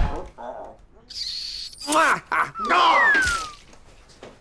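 Short wordless vocal exclamations from people struggling, with a brief hissing burst carrying a steady high tone just over a second in. Around three seconds in a clean whistle-like tone falls steadily in pitch.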